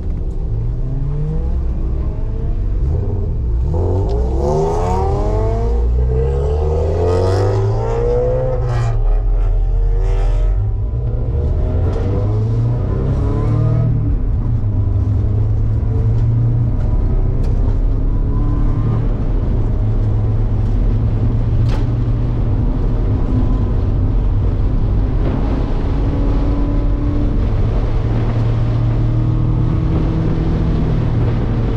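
Race car engine heard from inside the cabin at speed on a track, its pitch climbing and dropping several times in the first ten seconds or so as it revs through the gears and shifts, then running steadier under a heavy rush of road and wind noise.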